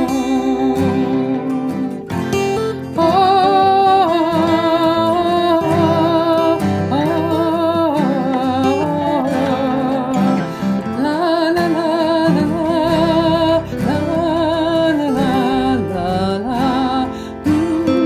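A voice singing long held notes with vibrato over acoustic guitar accompaniment, in a slow folk ballad.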